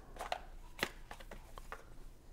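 Small cardboard game box being handled and its hinged lid lifted open: a few light taps and scrapes of cardboard, the clearest a little under a second in.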